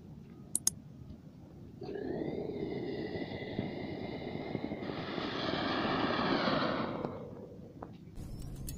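An anar fountain firework burning inside a lidded steel tin: a steady hissing rush with a whistling tone on top, starting about two seconds in, swelling about five seconds in, then dying away near the end. Two sharp clicks come before it.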